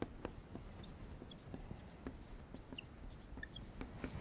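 Dry-erase marker writing on a whiteboard: faint, short taps and strokes of the tip against the board.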